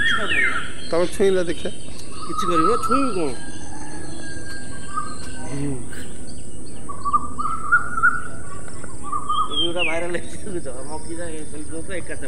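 Birds calling outdoors: repeated short whistled and warbling calls, some gliding down in pitch, over a steady high-pitched hiss, with a few light clicks near the middle.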